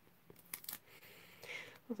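A few light clicks and taps, about half a second in, from a clear acrylic stamp block with a rubber sunflower stamp being handled.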